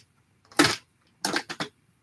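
Plastic toy packaging being handled, rustling in two short bursts about a second apart.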